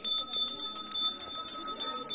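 A handheld bell rung rapidly and continuously, a quick steady run of strikes over a sustained ringing tone.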